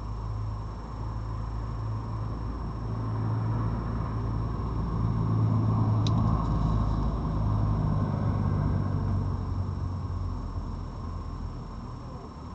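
A motor vehicle passing by, a low engine and road rumble that swells to its loudest around the middle and then fades. A single sharp click sounds near the middle.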